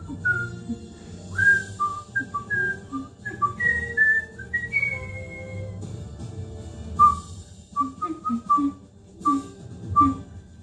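A person whistling a tune along with a TV sitcom theme song that plays underneath: a quick string of short, clear notes, with a pause after the middle before the whistling picks up again.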